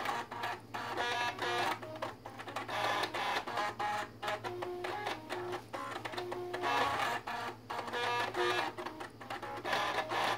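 Six floppy disk drives played as a musical instrument: their read/write head stepper motors buzz out a quick, rhythmic melody of short, reedy pitched notes. A steady low hum runs underneath.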